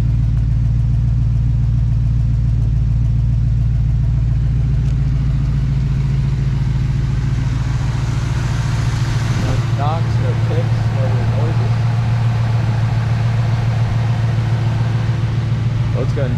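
A 1968 Chevrolet Camaro's numbers-matching 396 big-block V8 idling steadily with a deep, even rumble. About halfway through, the lowest rumble thins and a higher hiss comes up over it.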